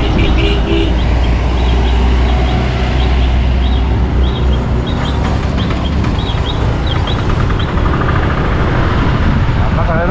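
Riding on a motor scooter: the engine runs under a loud, low wind rumble on the microphone, heaviest in the first half, with street traffic around.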